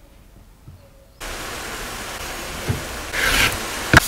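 Sheets of paper being slid and rubbed over a cutting mat, heard as two rustling scrapes in the last second, the second starting with a sharp tap. Under them is a steady hiss that sets in suddenly a second in.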